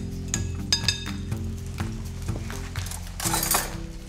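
Metal spoon clinking against a glass mixing bowl as thick tahini sauce is stirred and scooped: a few ringing clinks in the first second, then a short scrape near the end. Background music with sustained low notes runs underneath.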